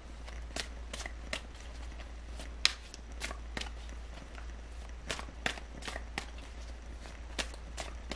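Tarot cards being shuffled by hand: irregular short slaps and clicks, a few a second, the sharpest about two and a half seconds in, over a steady low hum.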